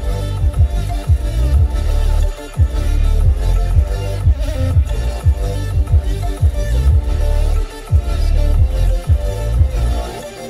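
Bass-heavy music with deep kick drums that drop in pitch, played loud through a Kia Seltos's Bose audio system and subwoofer and heard inside the car's cabin. The bass drops out briefly twice, about two and a half seconds in and near eight seconds.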